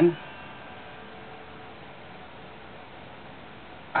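Faint steady electrical hum, with the strummed Les Paul's strings dying away faintly over the first couple of seconds.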